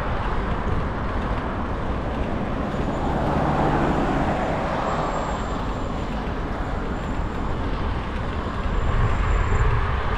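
Road traffic passing on the adjacent dual carriageway, heard from a moving bicycle with steady wind rumble on the microphone; one vehicle swells and fades about three to five seconds in.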